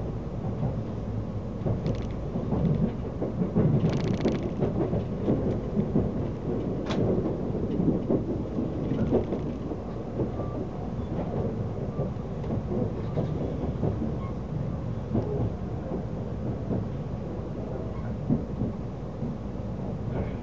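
Inside a moving Odoriko limited express train car: a steady low rumble of wheels on rail with irregular clicks and knocks, and a few brief hissy bursts in the first several seconds.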